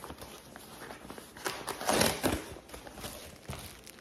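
Paper and plastic packaging rustling and crinkling as a parcel is unpacked, in short scattered bursts that are loudest about two seconds in.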